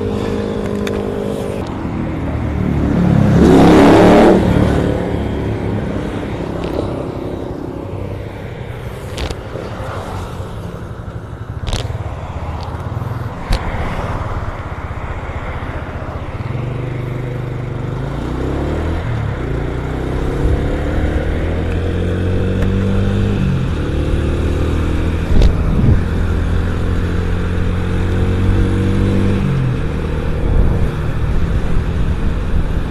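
Small single-cylinder four-stroke motorcycle engine (Yamaha Vega R 110) idling, with a passing vehicle swelling loudly about four seconds in. In the second half the bike pulls away and accelerates, its engine note climbing, dropping at each gear change and climbing again.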